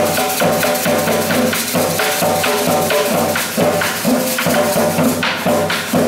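Live hand-drum ensemble playing a fast, dense dance rhythm, with steady pitched notes held over the drumming.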